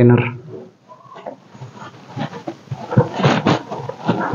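Plastic end cap of a PVC pipe container being worked open by hand: scattered clicks, then a run of scraping and squeaking strokes in the second half.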